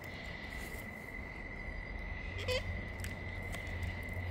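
A steady, high-pitched insect drone, one unbroken tone, with a short rising chirp about two and a half seconds in.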